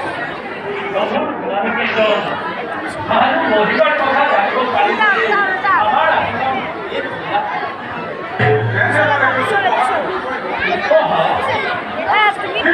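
Overlapping voices and chatter with music underneath, with a short low hum about eight seconds in.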